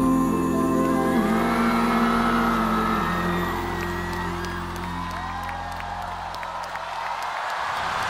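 A live band's closing chord of a pop ballad, held for about three seconds and then dying away, while a studio audience cheers and whoops and applause comes in.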